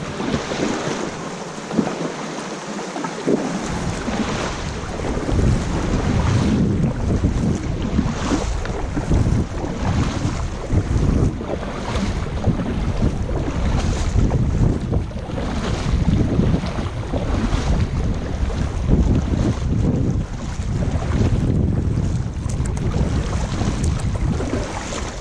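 Kayak paddle strokes dipping and splashing in calm sea water about every two seconds, under a heavy low rumble of wind on the microphone that sets in a few seconds in.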